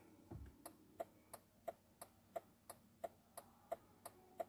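Faint, even ticking of a 2005 Jeep Grand Cherokee's turn-signal indicator, about three clicks a second.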